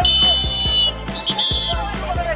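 A handball referee's whistle blown twice, shrill and high: one long blast of nearly a second, then a short one.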